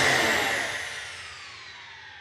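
Whoosh sound effect on a TV programme's closing title card: a rushing noise with several tones sliding downward in pitch, fading steadily.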